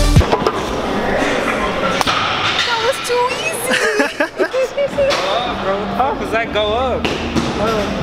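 Young men laughing and whooping, with a thin wash of gym room noise. The music stops right at the start, and there are a couple of sharp knocks.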